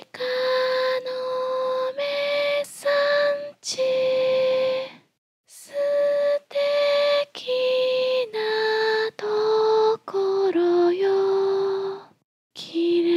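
A woman's voice singing a slow lullaby unaccompanied, in long held notes with short breaks between them, the tune stepping down in pitch over the last few seconds.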